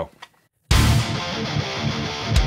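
A self-written heavy metal track starts playing abruptly about two-thirds of a second in: the thrashy intro, with distorted electric guitars.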